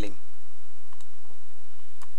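Computer mouse clicking: two short clicks about a second in and another at the end, over a low steady hum.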